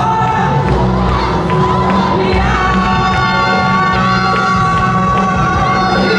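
Yosakoi dance music playing loud over loudspeakers, with the dancers' massed shouted calls and held voices over it.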